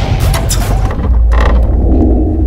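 Logo-intro sound effect: a loud, deep bass rumble under rapid mechanical clicks and ratcheting, with a short sharp swish about a second and a half in.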